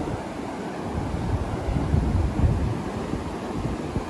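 Small surf breaking and washing up the beach in a steady rush, with wind buffeting the microphone.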